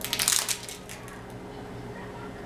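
Crinkling and rustling as a blush compact and its packaging are handled, in one burst about half a second long near the start, followed by a few faint small ticks.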